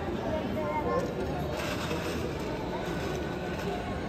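Indistinct babble of many people's voices talking at once in a large indoor hall, steady and without any one clear voice, over a low room hum.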